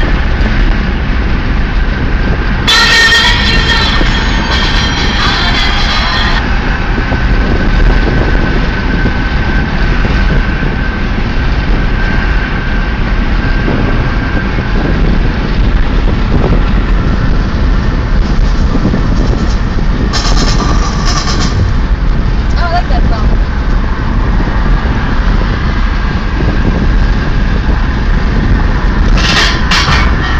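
Steady road and wind noise heard inside a small car's cabin at highway speed. Louder, higher sounds break in briefly about three seconds in and again about twenty seconds in.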